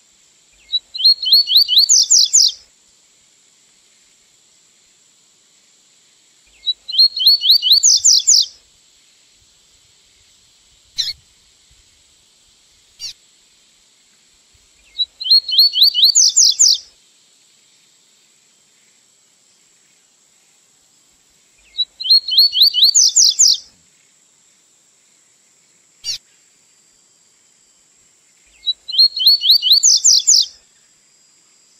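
Double-collared seedeater (coleiro) singing the 'tui-tui' song, played as a looped training recording. Five phrases come about every seven seconds, each a short lone note followed by a quick run of whistled notes climbing in pitch. A few sharp clicks fall between phrases over a faint steady high hiss.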